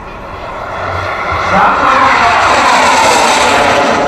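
Model jet turbine of a radio-controlled F-104S Starfighter passing fast overhead: a rush and whine that grows louder over the first second and a half, then stays loud with its pitch falling as the jet goes by.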